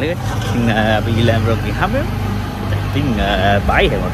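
A man talking over a steady low vehicle hum, like a car engine and road noise heard from on board.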